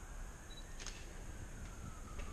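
A distant siren wailing faintly, its pitch slowly rising and then falling, with a light click near the start.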